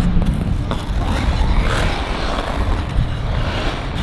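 Figure skate blades carving and scraping across ice in quick footwork, with swells of scraping as the edges bite. A steady low rumble runs underneath.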